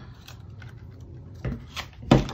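A handheld paper punch and cardstock being handled: soft rustling and rubbing as the punched-out label is worked free of the punch, then a couple of light knocks about one and a half seconds in.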